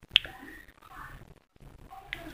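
A single short, sharp click just after the start, followed by faint room noise.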